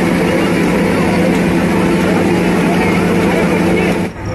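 Loud, steady mechanical whir with a low hum from a large electric fan running close to the microphone, with crowd voices underneath.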